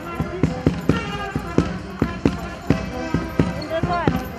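Horse's hooves clip-clopping on a paved road at an even pace, about four to five strikes a second, as it pulls a cart. Folk music and voices come from the cart over the hoofbeats.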